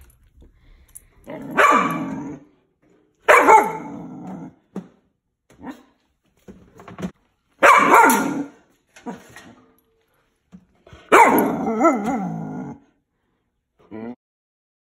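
Five-month-old Belgian Malinois puppy barking in four drawn-out, wavering outbursts, with a few short sounds between them.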